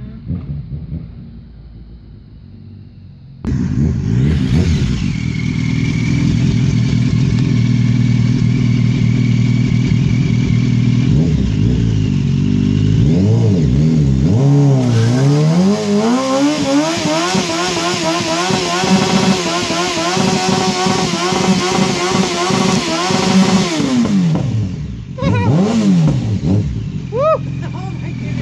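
A distant car engine spinning its tyres for the first few seconds, then a close sport motorcycle engine running and revved up hard, held at high revs with a rising whine and a hiss of the rear tyre spinning on concrete in a burnout. Near the end the revs fall away, followed by a few short blips of the throttle.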